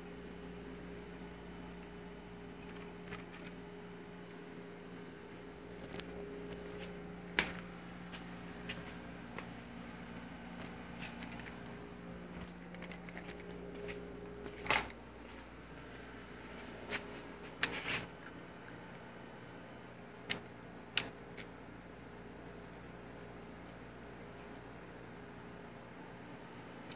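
Faint steady hum that dies away about halfway through, with scattered sharp clicks and knocks of plastic model train cars being handled and set on the track, the loudest about seven seconds in and several more between about fifteen and twenty-one seconds.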